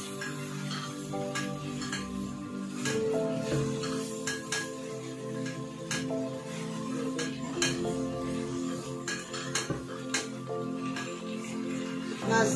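A spatula stirring chicken and spice masala frying in a nonstick pot, knocking and scraping against the pan at irregular intervals, over background music with steady held notes.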